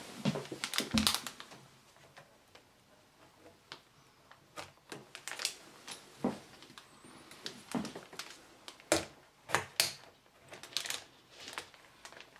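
Irregular light clicks and taps of a graphics card's metal bracket and plastic parts knocking against a motherboard as the card is lined up and pushed into its PCIe slot, with a cluster of taps in the first second.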